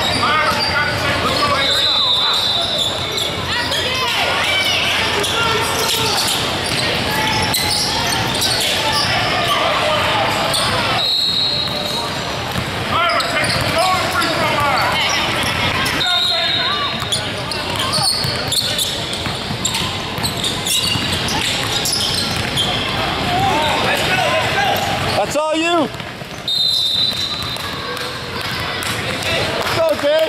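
Basketball game in a large gym: a ball bouncing on the hardwood court, a few short high sneaker squeaks, and many voices from players and spectators, all echoing in the hall.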